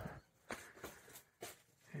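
Near silence, broken by three faint short clicks.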